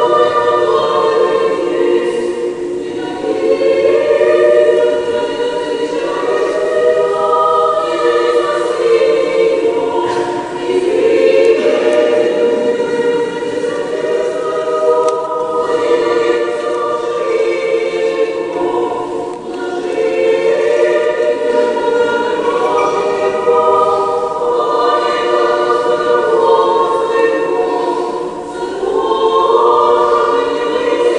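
Church choir singing an unaccompanied Orthodox liturgical chant in long held phrases of a few seconds each, with brief breaths between them.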